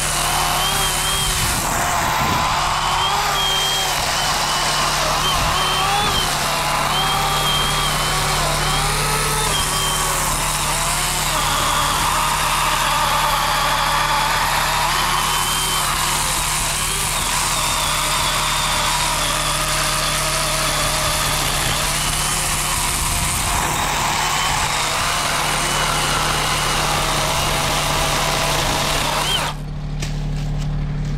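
Worx 40 V cordless electric chainsaw with an 18-inch bar cutting the felling notch into a small poplar trunk. Its motor whine wavers in pitch as the chain loads and frees, and it stops just before the end. Underneath runs a steady low hum from the rigged John Deere 2320 tractor idling.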